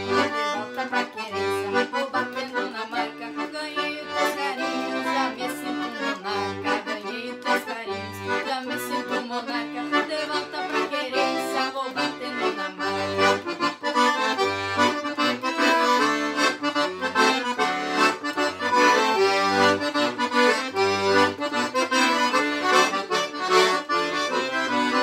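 Two accordions playing a xote duet: a piano accordion and a Pampiana chromatic button accordion, with melody on the right-hand keys and buttons over a steady, evenly pulsed bass rhythm.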